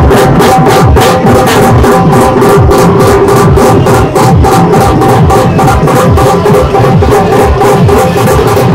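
Several dhol drums beaten fast with sticks in a steady, driving rhythm of about five strokes a second, with deep bass-head hits underneath and a steady held tone running through it.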